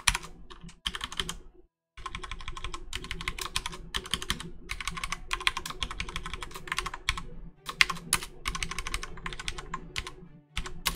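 Computer keyboard being typed on: a few scattered keystrokes, a short gap about two seconds in, then fast runs of keystrokes with brief pauses between bursts.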